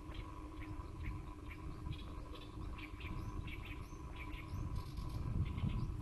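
Small birds chirping in short, quickly repeated notes over a low rumble, with a faint steady hum underneath.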